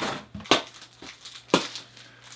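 Cardboard box being opened by hand: three short, sharp rips of cardboard, the loudest about half a second in.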